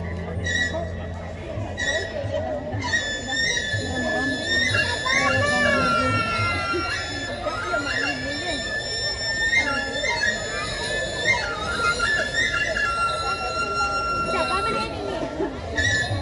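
Balinese gamelan ensemble playing, with long held high tones, some bending in pitch, over the voices of a crowd.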